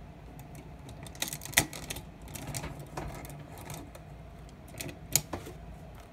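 Hard plastic parts of a combining robot toy clicking and knocking as its arms are plugged onto the sides and the figure is handled: a scatter of sharp, irregular clicks, two of the loudest about one and a half and five seconds in.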